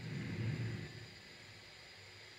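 Faint low rumble of handling noise for just under a second as a trumpet is lifted into playing position, then quiet room tone.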